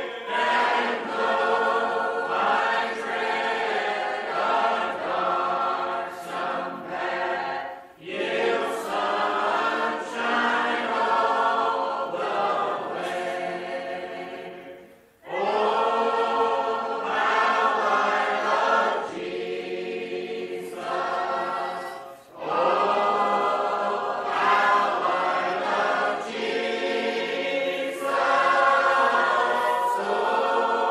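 Primitive Baptist congregation singing a hymn a cappella, many voices together, with short breaks between lines at about 8, 15 and 22 seconds in.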